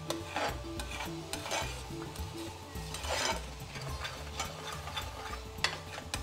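Metal spoon stirring thick curry sauce in a frying pan over a gas flame, with soft irregular scrapes and knocks against the pan and a gentle sizzle underneath.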